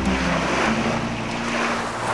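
Small waves washing onto a shore: a hissing rush that swells and ebbs. A low steady tone sounds underneath.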